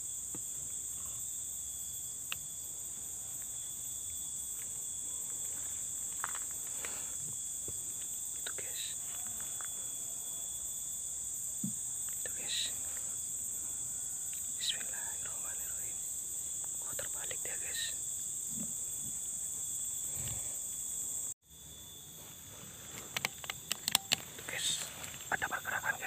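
A steady, high-pitched chorus of insects droning without a break, with faint rustles and soft sounds of movement over it. Near the end it cuts off suddenly, and a quieter stretch with a few sharp clicks follows.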